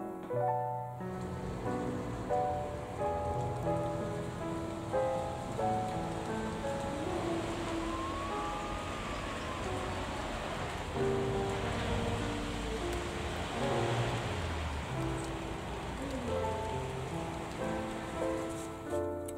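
Gentle piano background music over the sound of steady rain. The rain comes in about a second in and fades out near the end.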